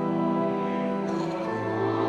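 Church music: an organ holding sustained chords, moving to a new chord about halfway through.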